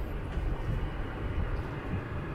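Steady hum and hiss inside the cabin of a running Toyota Corolla Altis, its climate-control fan blowing.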